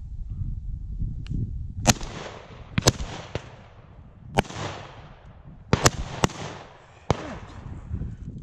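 A string of shotgun shots, about five loud ones and a few fainter, more distant ones, each followed by a fading echo. The shots are fired at birds flying high overhead, which the hunters call sky busting.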